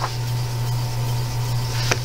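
Paper page of a thin paperback coloring book being turned and smoothed by hand: a short rustle at the start and a brief touch on the paper near the end, over a steady low hum.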